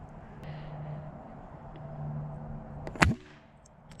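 A single sharp pop from a Crosman 1377 .177 multi-pump pneumatic pellet pistol firing, about three seconds in.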